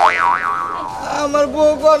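A cartoon "boing" sound effect whose pitch springs up and down twice and rings off over about a second. About a second in, a man's voice holds one long drawn-out note.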